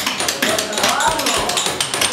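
Irregular tapping and knocking from hand work, with voices and music in the background.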